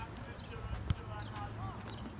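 Faint, distant voices over a steady low background hum, with a single sharp click just before a second in.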